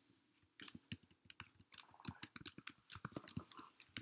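Faint, irregular small clicks and ticks, several a second, with no voice.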